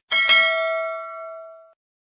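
Bell chime sound effect for clicking a notification bell icon: a bright ding struck twice in quick succession, ringing and fading out within about a second and a half.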